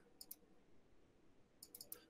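Faint computer mouse clicks over near silence: two close together near the start, then a quick run of three or four near the end.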